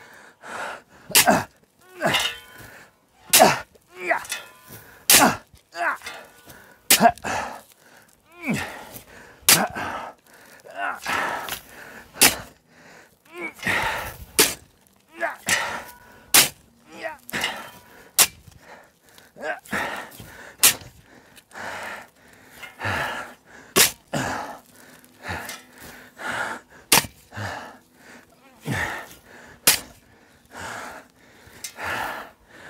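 Shovel digging into sandy soil: a long uneven series of sharp scrapes and strikes of the blade, about one a second, each followed by a short rush of soil thrown off the blade.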